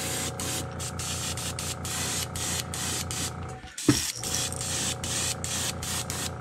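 Airbrush spraying pearl white paint onto a crankbait, hissing in short bursts a few times a second as the trigger is worked, over a steady low hum. It stops briefly about four seconds in, with a sharp click.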